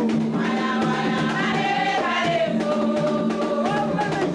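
A group of voices singing a Haitian Vodou ceremonial song together, with drum strokes beating underneath.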